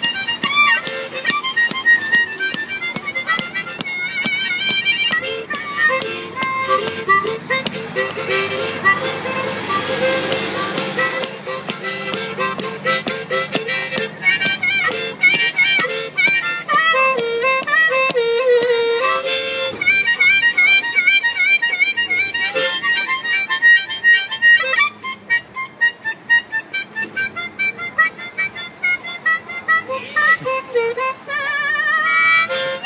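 Harmonica playing blues licks, cupped in the hands over an ordinary empty drinking glass that serves as its amplifier. Bent and wavering notes give way near the end to a fast, pulsing chugging rhythm.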